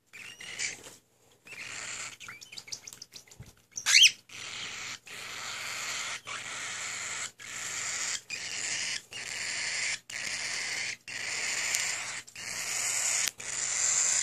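Cockatiel chick giving raspy, hissing begging calls in repeated stretches about a second long with short breaks between them. About four seconds in there is a single loud chirp with a sweeping pitch.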